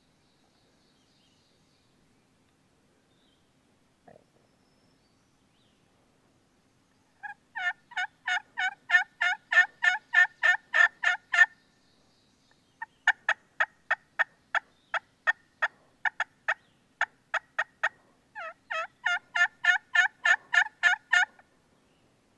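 Hen turkey yelps on a turkey call, loud and close, in three runs: each yelp breaks between a high note and a low note, at about three a second. The first run starts about seven seconds in, a slower run follows, and a quicker one ends just before the close.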